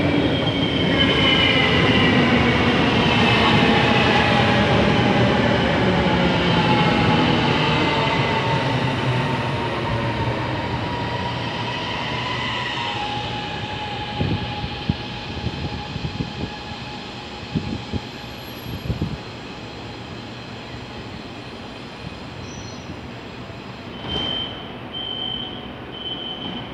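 CSR Zhuzhou LRT train braking into a platform: its electric drive whine falls steadily in pitch over the first dozen seconds as it slows, then stops. A few knocks follow as it halts, and near the end a run of short high beeps sounds as the doors open.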